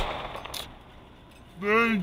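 A firework going off with one sharp bang, followed by a fading crackle and a smaller pop about half a second later.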